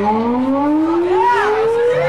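One amplified instrument tone gliding slowly and steadily upward in pitch, like a siren, as the band leads into its next punk song. A short arching voice-like call sounds over it about a second in.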